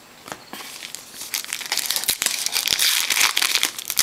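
Foil trading-card pack wrapper crinkling and tearing as it is opened by hand. It starts with a few soft clicks, then becomes a dense crackle from about a second in and grows louder near the end.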